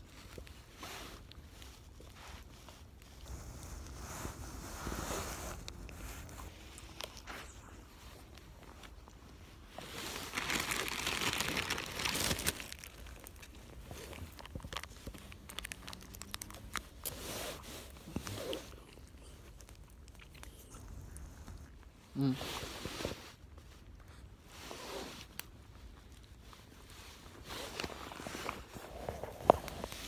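Rustling and crinkling right at the phone's microphone, with scattered light clicks and a louder stretch of hissing rustle about ten seconds in; a short mumbled word comes near the end.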